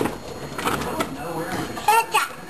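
Soft speech in a small room, with a clearer voice starting near the end.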